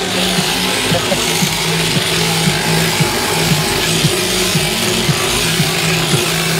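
Electric sheep-shearing handpiece running as it clips through a ewe's fleece: a steady low hum that dips and breaks off briefly several times, over a hissing cutting buzz.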